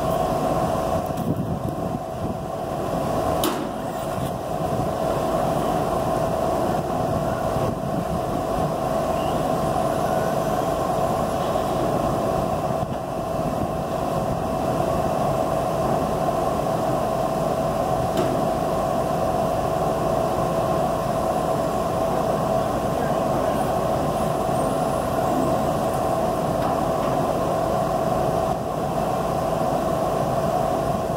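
A steady mechanical hum with a constant mid-pitched tone over a low rumbling noise, unchanging throughout, with a single sharp click about three and a half seconds in.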